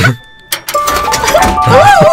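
A sharp click, then a coin-operated rocket kiddie ride starts up and plays an electronic jingle: held tones and wavering, swooping notes over a low beat.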